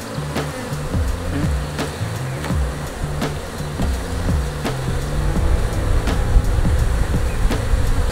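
Background music over the buzzing of an opened African honeybee colony (Apis mellifera scutellata), with scattered sharp clicks of a metal hive tool prying between the wooden frames.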